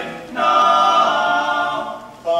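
Barbershop quartet of four male voices singing a cappella in close harmony, holding sustained chords from about half a second in that fade just before the end.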